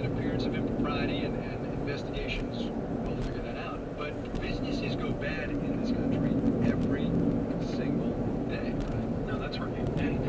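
Steady road and engine rumble inside a moving car's cabin, with a talk radio programme playing faintly over it.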